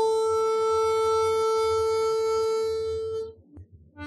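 Harmonica playing a melody, holding one long note for about three seconds, then breaking off for a brief pause before the next phrase begins.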